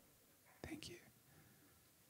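Near silence, broken about half a second in by a brief, breathy whispered word or two.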